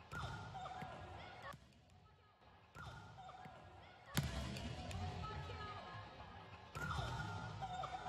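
Gym sound from volleyball practice, replayed several times in short repeated pieces: volleyballs bouncing and being hit on a hardwood court, with faint voices echoing in the hall.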